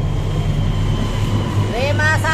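A steady low mechanical hum runs in the background, with a brief rising pitched tone near the end.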